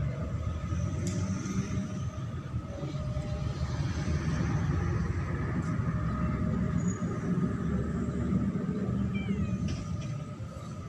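A domestic cat purring steadily, a continuous low pulsing rumble, while it rolls contentedly on its back.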